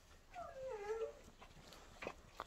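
A puppy whining once, a falling whine under a second long, as it waits to be fed.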